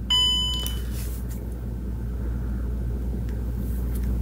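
DJI OM 5 smartphone gimbal's power-on beep: one short electronic tone of about half a second right at the start, over a low steady hum.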